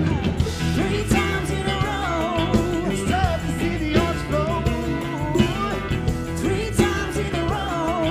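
Live band playing a song, with a woman and a man singing lead vocals over the band.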